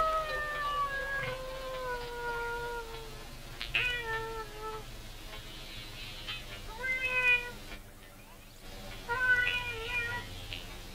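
A series of meow-like wailing calls: a long, slowly falling tone that fades over the first three seconds, then three short calls about four, seven and nine seconds in.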